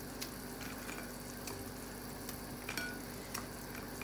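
Fried moong dal dumplings dropped one by one into thin simmering gravy in a steel pot, giving soft scattered plops and ticks over a faint steady hum.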